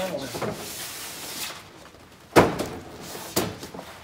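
A foam poly panel being slid into the plastic rails of a vertical ICF wall form: a rubbing scrape, then a sharp knock about two and a half seconds in and a lighter knock about a second later.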